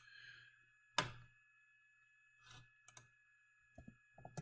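A few computer clicks and keystrokes against low room hum. One sharp click about a second in is the loudest, a couple of light key taps come near the end as a letter is typed into the symbol box, and a soft breath falls between them.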